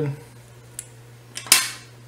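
A couple of faint ticks and then, about a second and a half in, one sharp metallic click as small fly-tying tools are handled at the vise, over a low steady hum.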